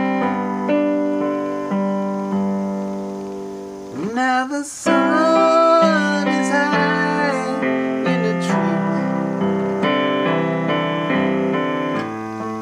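Piano-sounding keyboard playing sustained, changing chords in an interlude of a slow song. About four seconds in, a wordless vocal line with vibrato slides up and joins the chords.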